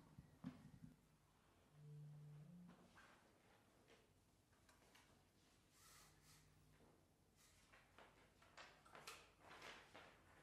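Near silence: room tone with faint rustles and small knocks, and a brief low steady tone about two seconds in.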